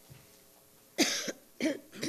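Two loud coughs, about a second in and again half a second later: a man clearing his throat into a microphone.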